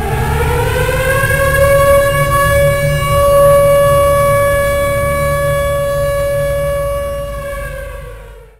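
A siren winding up in pitch over the first second or so, then holding one steady tone over a low rumble, fading out near the end.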